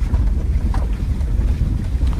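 Low, steady rumble inside the cabin of a 1995 Subaru Legacy driving slowly over a rough dirt fire road: engine and tyre noise, with a faint knock from the car jostling about three-quarters of a second in.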